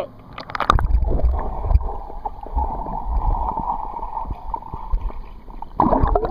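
Pool water splashing and churning as a young child swims with arm strokes and kicks right at the microphone, which dips into the water. It starts with sharp splashes about half a second in, then settles into a steady, rumbling churn.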